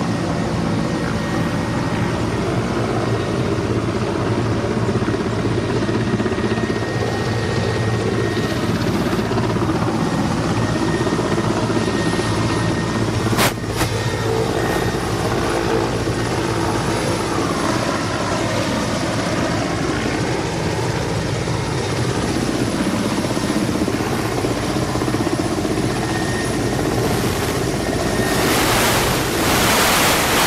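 Loud, steady running of a Mi-8-type twin-turbine helicopter taxiing on the ground: rotor blade chop over the engines' turbine hum, with a faint high whine. There is one sharp click about halfway through, and a rush of wind noise on the microphone near the end.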